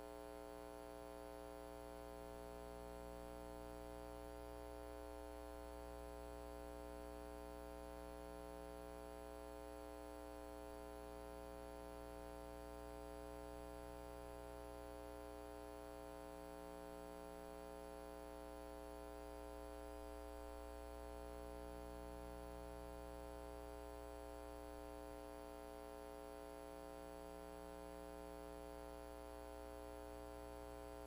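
Steady electrical mains hum: a low hum with a buzz of higher tones above it, unchanging, with nothing else heard.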